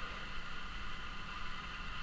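Steady low background hum and hiss with no distinct event: room tone between remarks.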